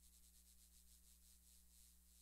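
Near silence: a faint, steady electrical hum with a light hiss.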